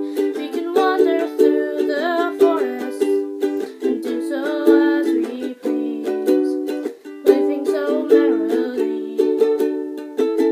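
Ukulele strummed in a steady rhythm of chords, with a voice singing a wordless melody over it in places.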